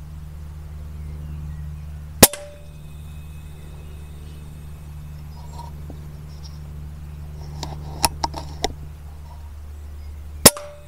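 A single shot from an FX Maverick PCP air rifle about two seconds in, a sharp crack with a brief ringing tail, over a steady low hum. A few lighter clicks follow near the end.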